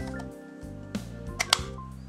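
Background music of steady held synthesizer notes, with a few light plastic clicks about a second and a half in from the UK plug adapter and power brick being handled.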